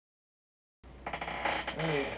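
Dead silence, then about a second in the sound cuts in abruptly: a steady low hum under a rough, hissing noise. Near the end a man starts to speak.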